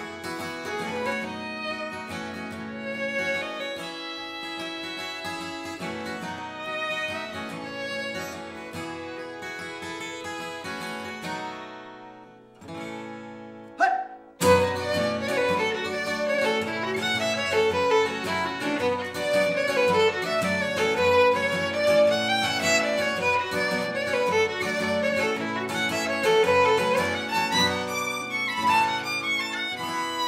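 Instrumental break in a folk song: violin playing the melody over strummed acoustic guitar. The playing thins and drops away about twelve seconds in, then comes back with a sudden sharp onset, louder and fuller, about halfway through.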